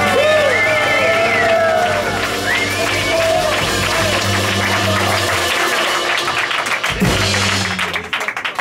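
Live blues band (singing, electric guitar, keyboard, bass guitar and drums) playing the closing bars of a song, the singer's voice sliding over a held bass note. The held note stops about five and a half seconds in, a final accent hits about a second later, and clapping starts near the end.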